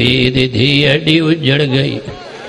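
A man chanting in a melodic recitation style, holding long notes that bend up and down in pitch. The voice breaks off near the end.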